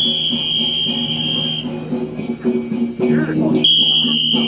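Procession music with a steady beat over a sustained low drone, and a high, piercing held tone that sounds for about a second and a half at the start and comes in again near the end.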